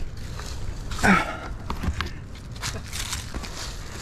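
Dry leaves and loose dirt crunching and rustling under feet and hands as someone scrambles across the ground, with scattered short crackles and a brief voice sound about a second in.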